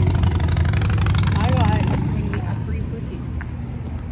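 Low rumble of a passing motor vehicle, loudest at the start and fading away over about three seconds.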